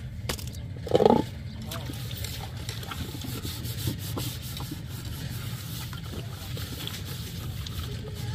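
Metal pots and a tray being washed at an outdoor tap, with light metal clinks over a steady low rumble. About a second in there is one short, loud call.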